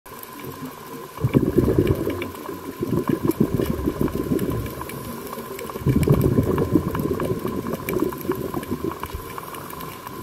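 Air bubbles heard underwater, bubbling in two long bursts, the first starting about a second in and the second about six seconds in, over a faint steady whine.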